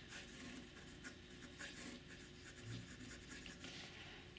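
Faint, irregular scratching of a fountain pen's springy No. 8 titanium nib writing cursive on grid paper; titanium nibs like this give a bit of feedback on the page.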